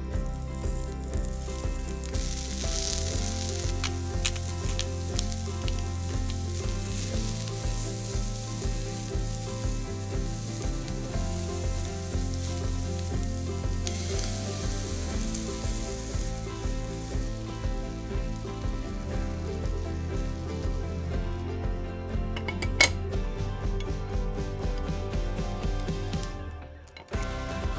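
Peeled shrimp sizzling in olive oil in a hot sandwich maker on medium-low heat, with beaten egg poured in over them about halfway through. A single sharp click comes near the end.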